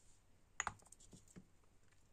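Small plastic-capped paint pots clicking faintly as they are handled in the fingers: a quick cluster of clicks about half a second in, then a couple more single clicks.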